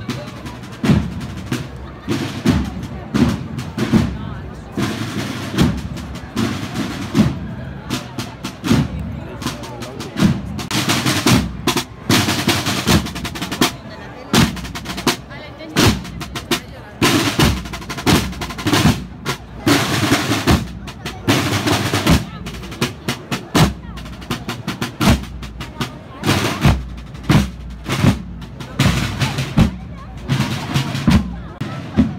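Procession drum section of snare drums beating a steady marching rhythm, strike after strike at a regular pace.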